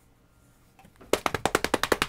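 A rapid, even run of about a dozen sharp clicks, roughly ten a second, starting about a second in after near silence.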